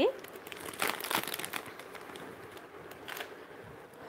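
Clear plastic jewellery packets crinkling as they are handled, with a cluster of rustles about a second in and a shorter one near the end.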